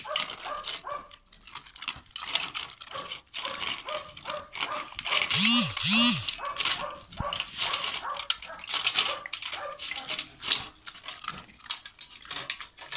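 A dog eating dry food from a stainless steel bowl: crunching and chewing, with kibble and muzzle clicking against the metal. About five and a half seconds in, two short rising-and-falling calls stand out as the loudest sound.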